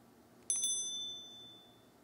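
Subscribe-button sound effect: two quick mouse clicks about half a second in, then a high bell ding that fades away over about a second.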